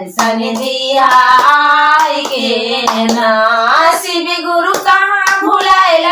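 Two women singing a Shiv charcha bhajan without instruments, keeping time with steady hand clapping.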